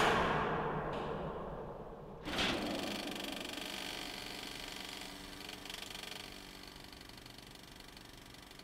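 A heavy clunk that fades away, a second clunk about two seconds later, then a film projector running with a steady whir.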